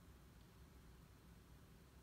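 Near silence: faint steady low hum and hiss of room tone.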